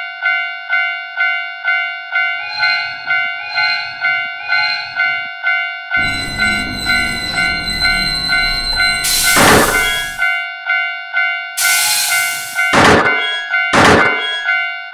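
Railroad crossing warning bell ringing steadily, about two dings a second, as a cartoon steam train approaches and passes: low chugging from a couple of seconds in becomes a continuous rumble, with loud bursts of steam hiss about nine and a half seconds in and again around twelve to thirteen seconds.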